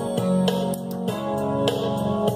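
Instrumental music led by guitar, chords struck in a steady rhythm, with no singing.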